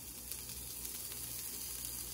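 A thin slice of cured country ham sizzling on a hot cast-iron griddle: a steady, quiet hiss.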